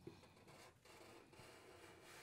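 Near silence, with the faint scratch of a felt-tip permanent marker drawing a line on paper.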